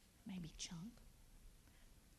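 A child's faint, soft answer of a word or two, lasting about half a second, shortly after the start, with a hissy consonant in the middle.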